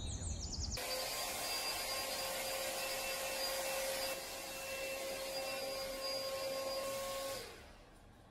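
Handheld hair dryer blowing: a steady rush of air with a high motor whine. It starts abruptly about a second in and fades out near the end.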